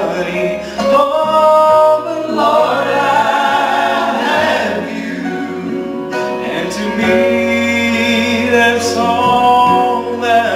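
Two men singing a gospel song in harmony through microphones, with long held notes, over an accompaniment whose low bass notes change every few seconds.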